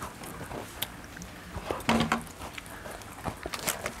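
Dry Parle-G biscuits being chewed and bitten, with scattered sharp crunches and a brief voiced hum about halfway through.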